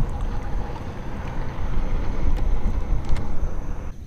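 Wind buffeting an action camera's microphone: a dense rushing rumble that rises and falls, with a few faint clicks in it.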